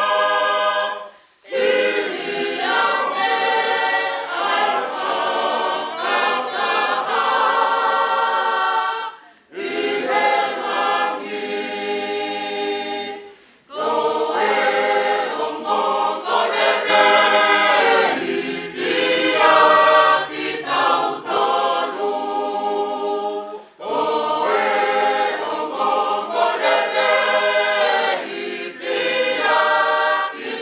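A Tongan congregational choir of women's and men's voices singing unaccompanied in parts. The singing comes in long phrases with brief pauses for breath between them, about four times over.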